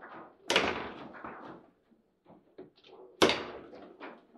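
Table football in play: a sharp, loud knock of the ball being struck or hitting the table about half a second in, and another near the end, with lighter clacks of the rods and figures in between.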